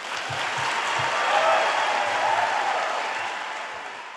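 Audience applauding, swelling to its loudest about a second and a half in and then slowly fading.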